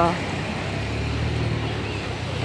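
Steady street traffic noise with a low engine hum as a car drives slowly past close by.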